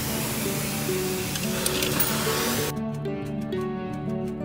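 Background music, with a loud hiss of a self-serve car wash's high-pressure spray wand over the first two and a half seconds, cutting off suddenly.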